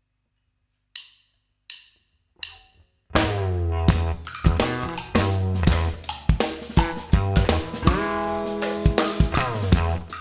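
Three sharp count-in clicks about two-thirds of a second apart, then a live rock band comes in together on the next beat: drum kit, a heavy bass line through an Ampeg bass amp, and guitar playing a funky psychedelic groove.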